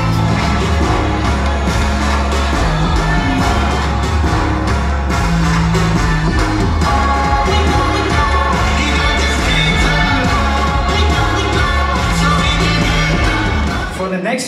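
Live pop song from a stage performance: a backing band with a heavy bass line and a singing male voice.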